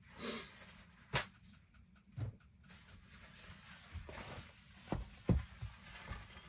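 Paper towel wiping the inside of an empty clear plastic storage tub, with light rubbing and a few knocks of the plastic, the loudest a sharp click about a second in and a cluster of knocks late on.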